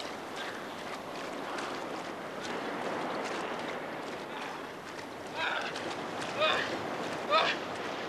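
Steady rush of surf and wind, then from about five seconds in, a man's short, high-pitched cries of laughter, three of them about a second apart and louder than the surf.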